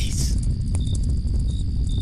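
Crickets chirping, short high chirps repeating irregularly under a second apart, over a steady low rumble: a night-time ambience bed.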